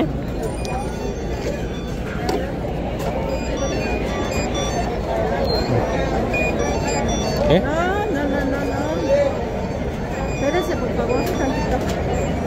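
Crowd of many people talking and calling out at once, a steady dense babble of voices, with a loud rising call about two-thirds of the way through.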